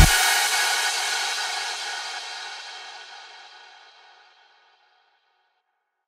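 The background music track ends on a final crash cymbal, which rings out and fades away over about four seconds.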